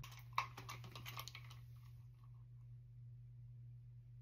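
Small clicks and taps from handling a clip-top jar and a squeeze bottle of honey, with one sharper click about half a second in. After about a second and a half it goes quiet but for a faint low hum.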